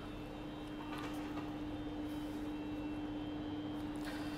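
Steady machine hum of laboratory equipment, holding one constant low tone with a faint even hiss behind it, and a brief soft rustle of handling about a second in.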